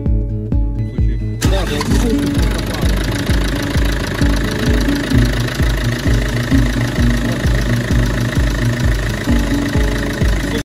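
Background music with a steady beat; about a second and a half in, the OM651 2.2-litre four-cylinder diesel cranks, catches and keeps running under the music.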